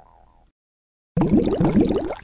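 A fading electronic sound-effect tail dies away into a moment of silence. Then a loud burst of water bubbling and gurgling starts suddenly, a bit over a second in.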